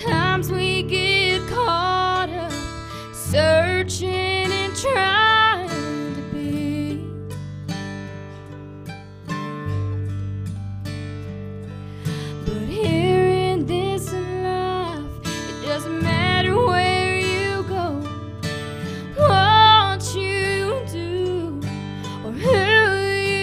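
A woman singing a slow gospel song to strummed acoustic guitar, her long held notes wavering with vibrato. The singing comes in phrases, with a stretch of mostly guitar in the middle before she sings again.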